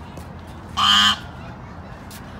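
A single loud bird call, short and flat in pitch, about a second in.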